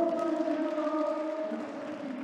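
A man's voice over a public-address system in a gym, drawing out one long, steady high note in a chant-like delivery.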